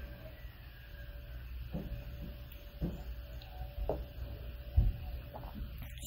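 A few soft clicks and knocks over a faint steady hum, the loudest a low thump about five seconds in, as a glass tasting glass is sipped from and set down on a wooden tabletop.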